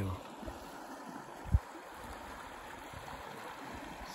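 Snowmelt-swollen creek flowing over riffles, a steady rushing of water. A single brief low thump about a second and a half in.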